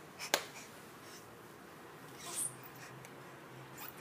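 Quiet room with a baby crawling on a hardwood floor: one sharp tap about a third of a second in, like a hand slapping the wood, and a brief faint rustle about halfway.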